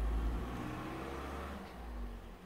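A car engine nearby: a low rumble with a faint rising whine as it accelerates, fading toward the end, heard from inside a car.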